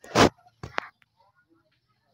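Three short, sharp animal calls within the first second, the first loud and the next two fainter.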